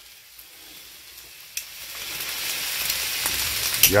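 Bacon rashers and pork sausages sizzling on an electric griddle plate, a steady hiss of frying fat with a few sharp pops. The sizzle fades up over the first couple of seconds.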